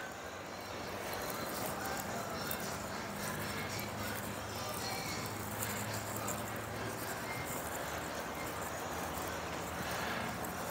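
Quiet outdoor ambience: a steady faint hiss with a low hum underneath and no distinct events.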